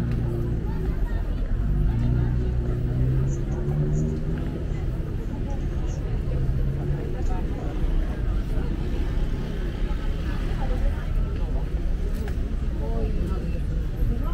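Busy city street ambience: a crowd of people talking over the steady noise of traffic.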